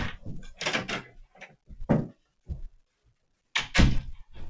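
An interior door being opened and shut: a run of knocks and scrapes, with the loudest thump just before the end as it closes, amid footsteps.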